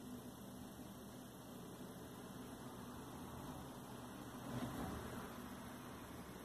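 Faint steady hum and hiss: room tone, with no clear event.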